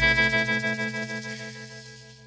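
A rock band's final chord left to ring out: electric guitar and the rest of the band sustaining after the drums stop, fading steadily away over about two seconds.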